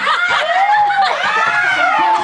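Laughter and high voices from a small group, with long swooping rises and falls in pitch, several voices overlapping.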